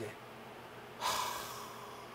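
A man's single long, breathy sigh, "haa...", starting about a second in and fading away: a sigh of exhausted relief at having survived.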